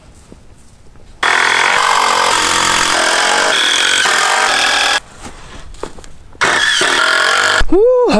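Handheld power tool running in two bursts, a long one of nearly four seconds and a short one of about a second, each starting and stopping abruptly, as boards are fastened to the wooden barn posts.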